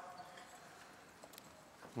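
Near silence: room tone, with a couple of faint clicks about halfway through.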